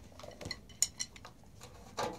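A few light, scattered clicks and clinks of drumsticks knocking against a music stand as a book is set on it. The two sharpest come just before and at about one second in.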